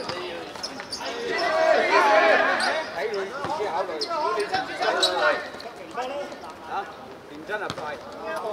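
A football kicked hard on a painted hard court, a sharp thud right at the start, followed by a few more ball knocks, with players and onlookers shouting throughout.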